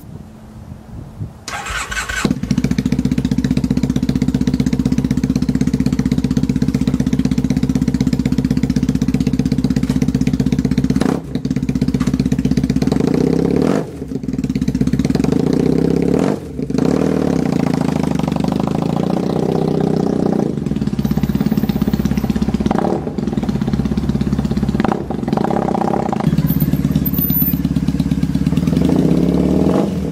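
Triumph air-cooled parallel-twin motorcycle engine being started: it cranks briefly and catches about two seconds in, then idles steadily, with several short throttle blips in the second half.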